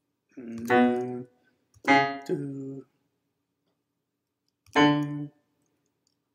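Electronic keyboard sounding three short piano-like notes or chords, one after another, each held for about a second or less and then released, with short gaps between them.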